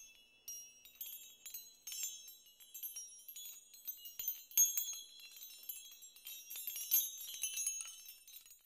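High-pitched tinkling chimes: many small bell-like strikes overlapping in an irregular shimmer, dying away near the end.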